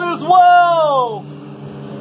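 A man's loud, drawn-out town-crier cry with no words: a held note, then a long call that slides down in pitch and stops a little over a second in, over a steady low hum.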